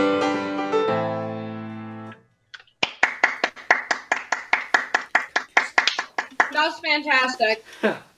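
Grand piano ending a song on a held chord that rings and fades away, then a short pause. Quick hand clapping follows, heard over a video call, with a voice calling out over it near the end.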